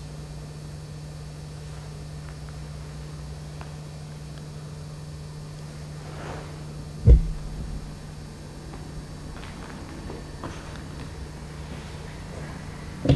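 Steady low electrical-sounding hum with light hiss, broken about seven seconds in by a single heavy low thump, with a few faint clicks later.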